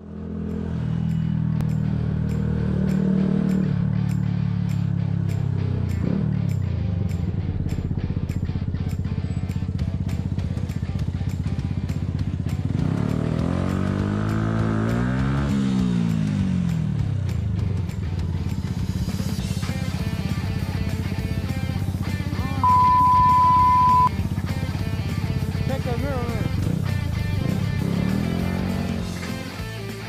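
A motorcycle engine runs as the bike rides between lanes of slow traffic. About halfway through, its note climbs and falls back. Near the end comes a loud, steady one-tone beep lasting about a second and a half.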